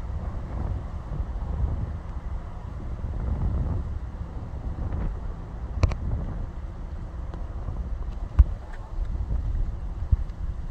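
Wind buffeting a phone's microphone outdoors: a low, gusting rumble that rises and falls, with two short clicks, about six and eight seconds in.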